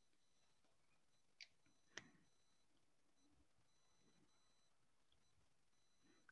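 Near silence with two faint clicks, about a second and a half and two seconds in, of computer keys or a mouse button being pressed.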